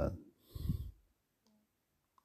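A man's voice breaking off mid-sentence, followed by a short breathy vocal sound and then quiet with a faint click.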